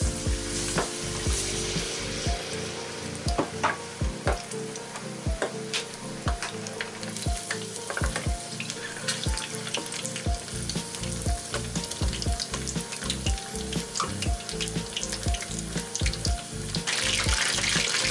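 Battered chicken pieces deep-frying in hot oil in a stainless steel pot, the first of two fryings: a steady sizzle with frequent crackles and pops. The sizzle grows louder near the end.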